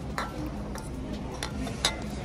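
Glass jar candles with metal lids clinking and knocking against each other as they are handled and turned in the hands: about four light knocks, the last, near the end, the loudest.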